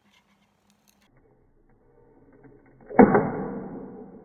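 A sudden loud bump against the recording phone about three seconds in, with handling noise that fades over about a second.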